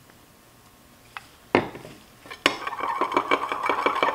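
Metal stir rod clinking and scraping against a glass measuring cup while black colorant is mixed into liquid plastisol. A few separate sharp clinks come first, then quick continuous stirring in the last second and a half.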